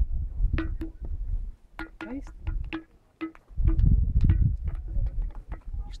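A limestone gaval dash (musical rock) struck again and again with small hand-held stones: a quick, irregular series of knocks, many of them leaving a short ringing note.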